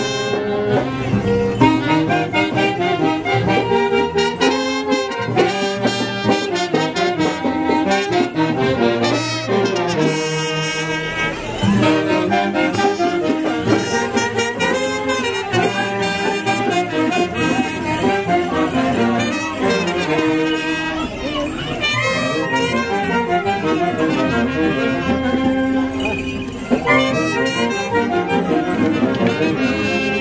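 Live Andean festival band music, with saxophones and a trumpet playing the melody together over a steady accompaniment.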